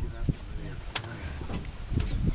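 Safari jeep's engine running with a steady low hum, and a single sharp click about a second in.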